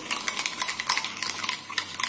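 A spoon beating a runny mix of instant coffee, sugar and warm water in a glass bowl, rapid irregular clinks of the spoon against the glass: the early stage of whipping dalgona coffee.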